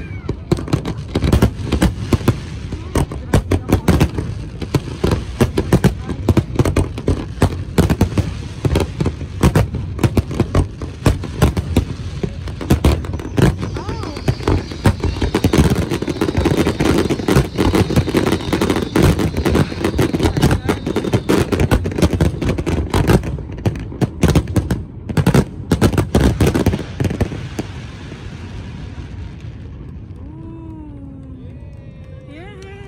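Fireworks display: a dense, rapid barrage of bursting aerial shells, bang after bang, with a faint high hiss in the middle. The bangs thin out and grow quieter near the end.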